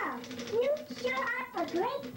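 A high-pitched, sped-up 'chipmunk' voice talking, its pitch swooping up and down. Faint clacks of an Olivetti Lettera 32 manual typewriter's keys sound beneath it.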